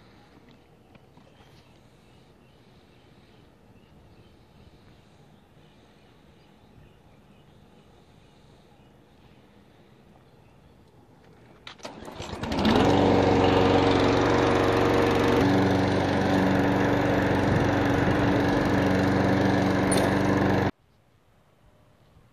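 Faint background at first, then about halfway through a Briggs & Stratton lawn mower engine starts with a short rattle, catches and runs steadily. It cuts off suddenly near the end.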